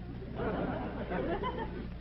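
Faint, indistinct murmur of voices.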